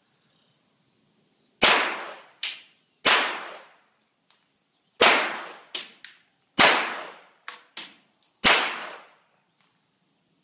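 Pistol fired five times, the shots spaced about one and a half to two seconds apart, each a loud crack that rings off over about half a second. Fainter sharp cracks fall between the shots.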